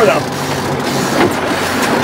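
A fishing boat's engine running steadily at slow trolling speed: a low, even drone with wind and water noise.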